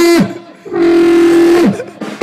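Banda brass section playing in unison: a short blast, then a longer held note about a second long, each ending with a downward fall in pitch.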